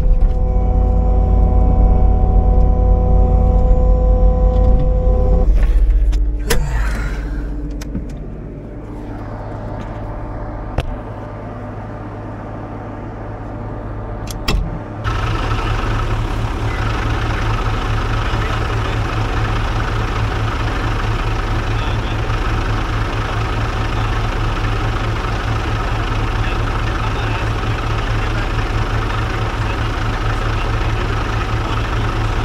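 A skid-steer loader's diesel engine running, heard from inside the cab; about five seconds in it is shut off and winds down. After a quieter stretch with a couple of clicks, a dump truck's diesel engine idles steadily for the second half.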